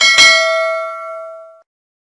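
Notification-bell sound effect of a subscribe-button animation: a bell ding struck twice in quick succession, ringing out and fading away about a second and a half in.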